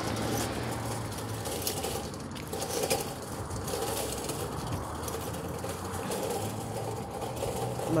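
Footsteps on asphalt and the rustle of a hand-held phone while walking, over steady outdoor background noise with a low hum that comes and goes.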